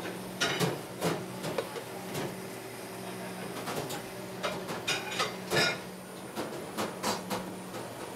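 Handheld kitchen blowtorch hissing as it caramelises sugar on crème brûlée ramekins, with scattered light clinks and knocks of ramekins and utensils over a steady low hum.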